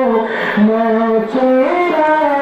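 A man singing an Islamic devotional melody into a microphone, his voice amplified, with long held notes joined by sliding, ornamented turns.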